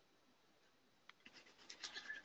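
Near silence, with a few faint short scratches in the second half, growing more frequent toward the end.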